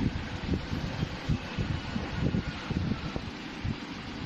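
Irregular low rumbling of handling and wind noise on a handheld phone microphone, over a faint steady hiss.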